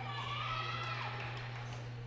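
Arena background during a broadcast break: faint, indistinct distant voices in the gym over a steady low electrical hum.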